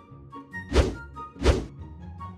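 Two loud, heavy thuds less than a second apart, over light instrumental background music.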